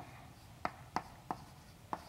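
Chalk writing on a blackboard: four short, sharp taps of the chalk against the board as symbols are written.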